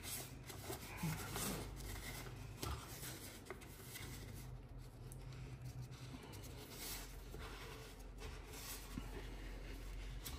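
Faint rubbing and light scraping as a hand inside a lamp's cone shade screws the plastic cap down onto the lamp arm, with soft scrapes scattered through.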